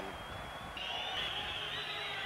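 Background hiss of an old broadcast recording, with a thin steady high-pitched whine that steps up in pitch a little under a second in.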